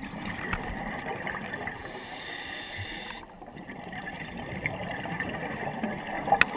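Scuba diver's regulator breathing heard underwater: a steady rush of exhaled bubbles, with a brief lull a little past halfway.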